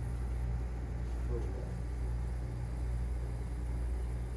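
Vintage 1980s R-22 air conditioning system running: a steady low hum from the system with an even hiss of refrigerant and air at the supply vent.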